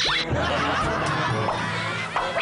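A man laughing heartily, snickering and chuckling, over background music.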